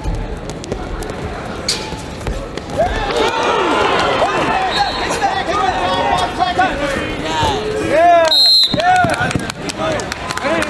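Wrestling shoes squeaking on a wrestling mat during a scramble: many quick, high squeaks starting about three seconds in and coming thick and fast toward the end, over arena voices.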